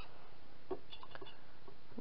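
A few faint, short taps and clicks of objects being handled, over a steady background hiss.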